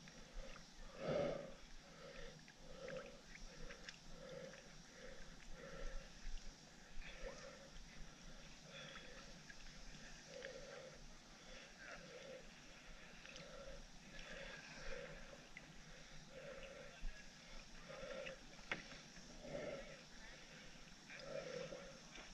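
Water gurgling and lapping against a camera housing that bobs at the surface of a lake. It comes as short, faint gurgles about one to two a second, with an occasional small click.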